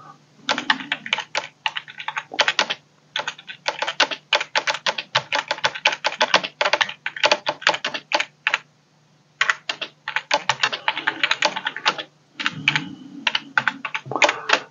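Typing on a keyboard: quick, irregular key clicks several per second, with a short pause about nine seconds in, over a faint steady hum.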